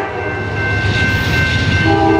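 A sustained, horn-like chord of several steady held tones over a low rumble, laid over the closing title card; a pair of lower notes drops away at the start and returns near the end.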